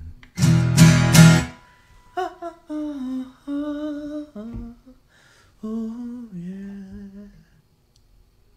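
The closing bars of a song: a guitar chord is strummed and rings for about a second, then a man hums a wordless melody in several held, gliding phrases that fade out shortly before the end.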